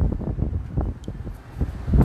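Uneven low rumbling buffeting on a handheld phone's microphone.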